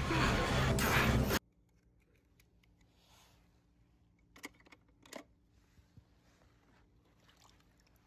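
Film-soundtrack music that cuts off suddenly about a second in, followed by near silence broken by two sharp clicks and a few fainter ticks from die-cast toy cars being handled in a plastic bin.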